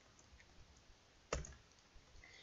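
Faint computer keyboard keystrokes: a few quiet taps and one sharper key click just over a second in.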